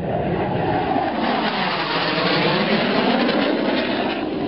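A rushing, rumbling noise like a passing train or aircraft, building over the first second and holding steady, with a faintly wavering pitch.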